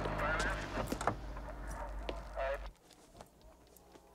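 A car engine idling with a steady low hum, and a few light clicks about a second in. The hum cuts off suddenly about two and a half seconds in, leaving a quiet room.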